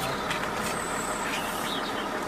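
A car engine running steadily, heard as a continuous even noise, with a brief faint high whine near the middle.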